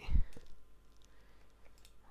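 A short low thump at the start, then a few faint computer-mouse clicks over quiet room noise as text is selected on screen.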